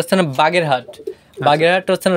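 A man's voice speaking, with domestic pigeons cooing faintly in the background.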